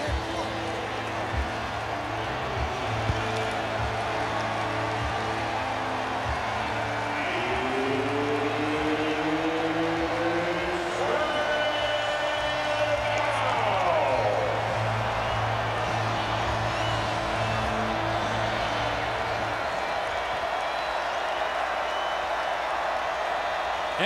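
Large football stadium crowd cheering steadily, with music playing over it and a few pitched slides, rising about eight seconds in and falling around thirteen seconds. The home crowd is making noise on the visiting offence's third down.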